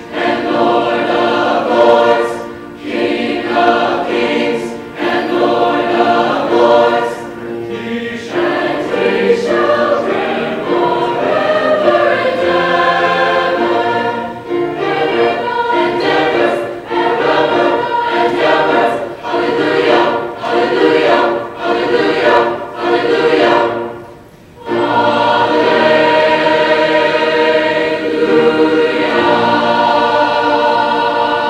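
School chorus singing in phrases with short breaks between them. The voices drop out briefly about three-quarters of the way through, then come back on a long held chord.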